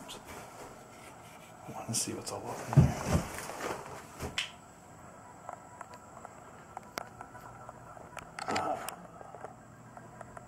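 Knocks, bumps and handling noise from a person climbing up into an old building's wooden attic, with the camera jostled. There is a cluster of thumps about two to four seconds in, the heaviest near three seconds, then scattered light clicks.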